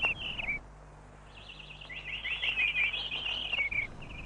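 Small birds chirping: a short run of quick twittering chirps, a pause of about a second, then a longer, denser run of chirps.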